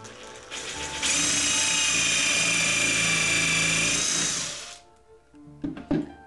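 Cordless drill/driver spinning a countersink bit into a pine board, boring a screw pilot hole: a steady high whine for about four seconds that then winds down. A short knock near the end.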